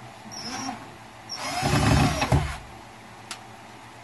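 Cordless drill driving a screw into plywood: a short burst, then a longer run of about a second and a quarter, followed by a single click.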